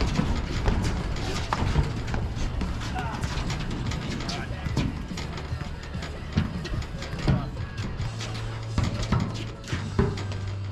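Padel rally: sharp pops of paddles hitting the ball and the ball bouncing, roughly one a second, with background music and low voices under it.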